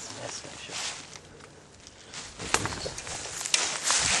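Footsteps and rustling, with a few sharp clicks about two and a half and three and a half seconds in.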